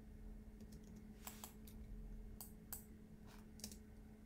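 Faint computer keyboard and mouse clicks, a scattered series of short taps, over a low steady hum.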